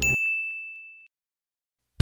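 A single high ding, struck once and ringing out as it fades over about a second, just as the music before it stops.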